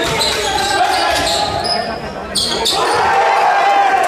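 Basketball being dribbled, bouncing on a sports-hall floor, with players' voices calling out over it.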